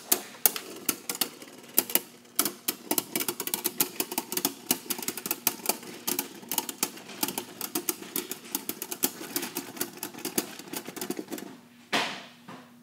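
Two Beyblade Burst spinning tops battling in a plastic stadium: a steady whir of spin under rapid, irregular clicks and clacks, several a second, as the tops strike each other and the stadium wall, with a sharp knock at the end.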